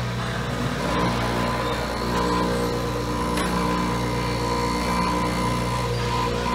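Winona Van Norman TRX tappet grinder running: its three-quarter-horsepower motor and CBN grinding wheel give a steady hum, and a higher steady whine joins about a second in as the hand-fed spindle head brings a hydraulic lifter up to the wheel to reface it.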